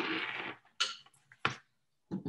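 Handling noise as a computer's power cord is plugged in: a short rustle at the start, then a brief scrape and a sharp knock about a second and a half in.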